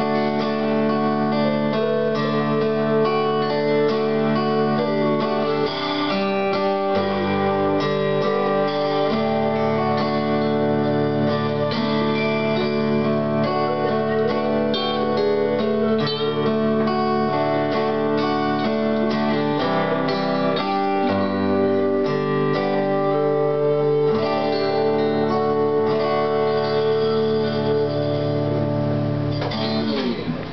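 Instrumental passage of a small live acoustic band: acoustic and electric guitars playing steady chords that change every few seconds, with a flute held at the microphone, and no singing.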